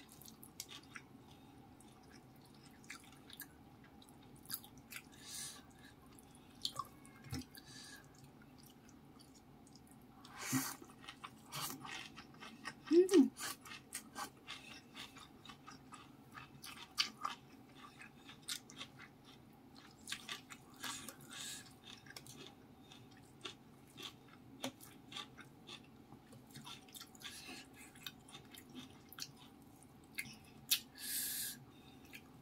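Close-miked chewing and wet mouth and lip smacks of someone eating rice, fish and greens, in short irregular clicks over a faint steady hum. About thirteen seconds in comes a brief hummed vocal sound, the loudest moment.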